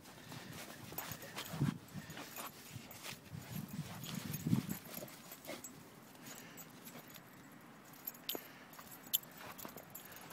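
A pit bull playing at a pile of packed snow, with snow crunching under its paws and jaws and a few short, low growls, the loudest about four and a half seconds in. Scattered sharp crunches and clicks, one just after nine seconds.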